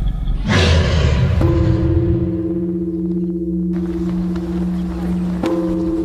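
Title sound design: a heavy hit about half a second in, then a sustained low ringing drone that pulses slowly. A second hit near the end renews the drone.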